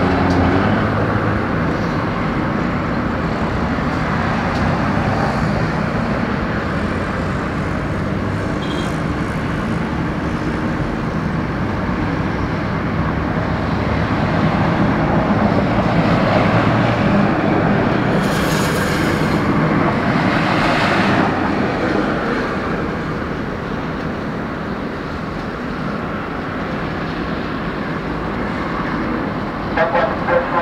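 Steady rumble of an Airbus A380's jet engines at taxi power, with a brief sharper hiss about two thirds of the way through.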